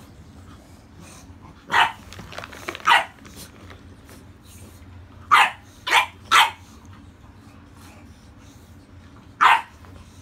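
English bulldog barking: six short barks, two in the first few seconds, a quick run of three in the middle and one near the end.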